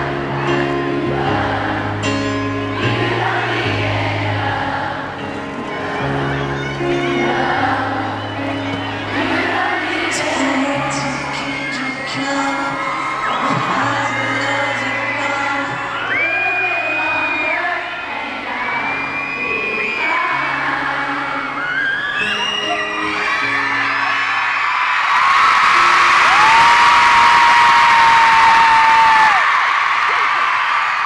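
Live amplified grand piano ballad, with held bass notes under a singing voice, and arena-crowd screaming and cheering mixed in. In the last few seconds the crowd's screaming swells and becomes the loudest sound.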